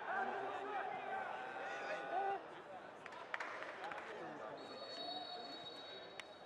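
Open-air football match sound: distant shouting voices in the first couple of seconds, a sharp knock about halfway through, and a thin steady high tone from about three-quarters of the way in.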